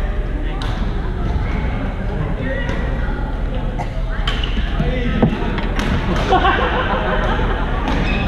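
Badminton rackets hitting a shuttlecock in a rally: sharp pops, about eight of them, some in quick succession, over the chatter of players in a reverberant sports hall.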